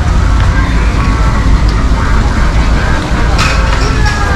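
Steady low wind noise on the microphone of a handheld camera being walked along, with faint voices of people around and one short sharp knock about three and a half seconds in.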